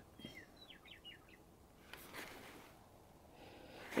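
Faint, quiet background with a small bird chirping a quick run of short, falling notes in the first second or so.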